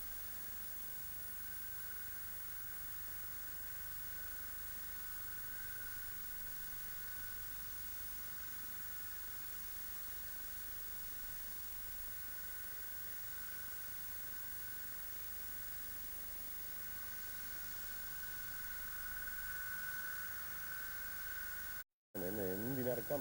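Steady hiss with a faint wavering high whine: the noise of a damaged stretch of videotape, whose picture is broken up at the same time. It cuts out briefly at the very end.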